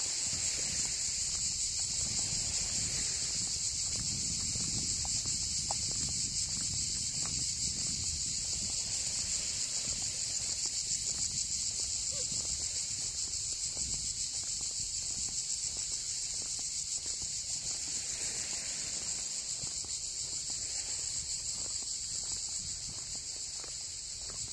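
A chorus of cicadas in a steady, high-pitched, unbroken buzz, with footsteps on a road low underneath.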